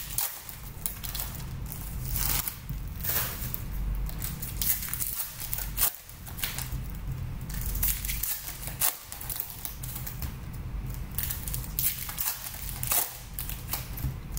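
Foil trading-card packs being torn open and crinkled by hand: a continuous, irregular crackle of thin wrapper, over a low steady hum.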